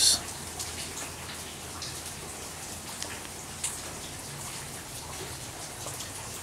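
Light, steady rain falling, with a few single drops tapping a little louder now and then.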